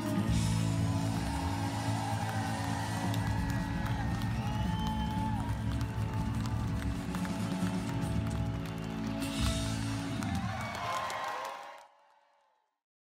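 Band music on guitars: strummed acoustic guitars with electric guitar over a steady low end, fading out about a second before the end.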